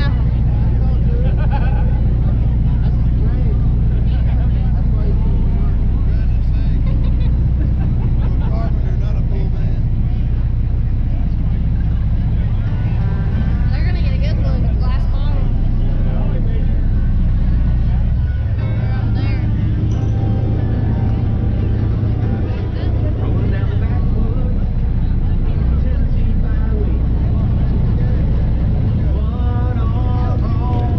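Boat engine running at low speed, a steady low hum, with voices coming and going over it.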